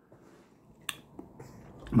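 Quiet room tone with one sharp click a little under a second in, followed by a couple of fainter ticks.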